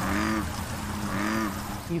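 A frog in a lily pond croaking twice: two low, drawn-out calls, one at the start and one about a second in, over a soft background of trickling water.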